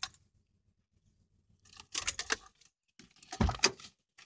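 Pickup truck door being opened as the driver gets out: a cluster of clicks and rattles about two seconds in, then a louder knock with a dull thud near the end.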